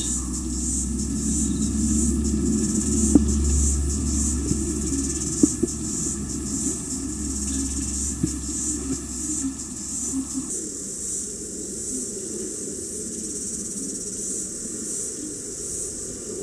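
Background insect chorus, a steady high-pitched chirring, with a low hum underneath that stops about ten seconds in.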